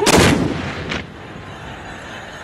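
A volley of black-powder muskets fired together by a line of mounted tbourida riders. One very loud blast dies away over about half a second, followed by a single fainter crack just under a second in.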